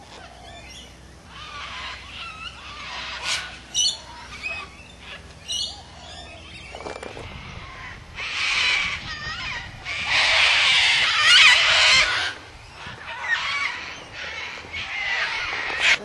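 Birds calling: short chirps and whistles at first, then loud, harsh squawking calls about eight seconds in and again for a couple of seconds from about ten seconds, with more calls after.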